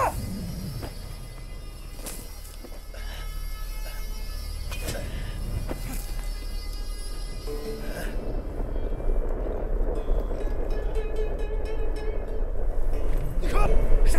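Dramatic film score over a low rumble that grows steadily louder, with a few sharp strikes in the first half.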